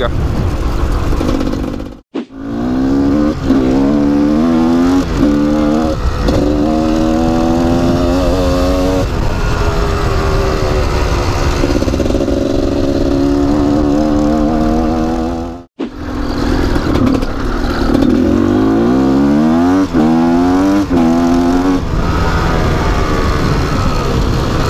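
2005 Gas Gas EC 250 two-stroke enduro engine under way, revving up and down, its pitch climbing again and again as it accelerates through the gears. The sound cuts out for a moment twice, about two seconds in and about two-thirds of the way through.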